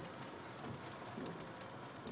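Quiet car-cabin background: a faint steady hiss with a few light ticks about a second in, typical of freezing rain landing on the car's roof and glass.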